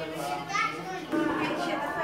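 Voices of a group of people talking over one another, children's voices among them: general chatter of a gathering.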